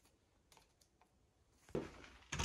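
A few faint, light clicks and taps from someone moving about a tiled kitchen, then a louder knock near the end.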